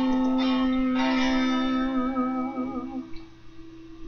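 A woman's voice holds the song's long final note, hummed with lips nearly closed, over guitar accompaniment. The voice wavers slightly and stops about three seconds in, leaving one guitar note ringing out.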